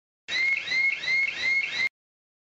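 An electronic alarm chirping: a short rising chirp repeated about three times a second for about a second and a half, then cut off suddenly.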